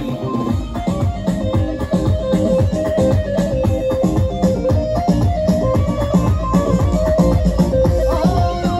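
Instrumental passage of live Kurdish dance music from a band: a melody line over a steady, driving beat, with no singing.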